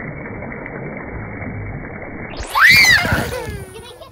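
Pool water splashing and sloshing, dull and muffled at first. About two and a half seconds in, a high voice gives a short squeal that rises and falls, then trails off.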